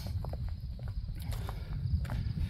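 A few soft footsteps on packed dirt, over a low steady rumble of wind on the microphone.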